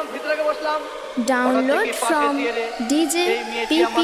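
Dance-remix breakdown: chopped, effected vocal samples with the bass filtered out, a few sharp hits, and a slowly rising riser tone building from about two and a half seconds in.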